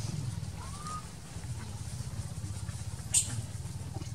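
Steady low hum in the background. About a second in there is a faint short rising squeak, and just after three seconds a sharp crackle of dry leaves as the baby monkey scrambles onto its mother.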